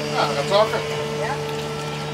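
A boat's engine running steadily, a low hum with a couple of constant tones, under a few words of conversation in the first half.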